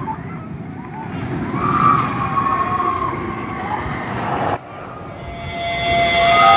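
Riders screaming on the Twisted Colossus roller coaster, a hybrid wood-and-steel coaster, over the rumble of the passing train. The sound cuts off suddenly about four and a half seconds in, and a quieter rising sound follows.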